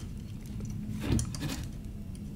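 Faint rubbing and clicking of hands fiddling old strings off a ukulele's tuning pegs, with one short louder handling noise about a second in, over a steady low hum.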